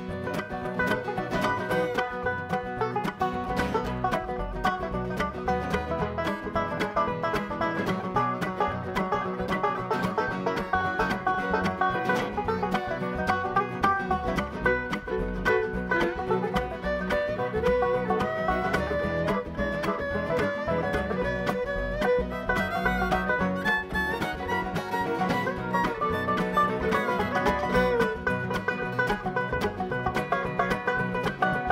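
Bluegrass instrumental break: a banjo picking fast, continuous runs of notes, with other string instruments playing along and no singing.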